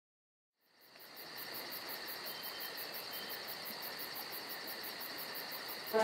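Crickets chirring steadily in a high, even chorus with a fast regular pulse, fading in about a second in. Music cuts in at the very end.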